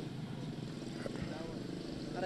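Steady outdoor background noise during a pause in speech, with faint distant voices.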